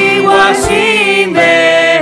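A woman singing a gospel hymn into a microphone over instrumental accompaniment, with long, wavering held notes and a low beat about every second and a half.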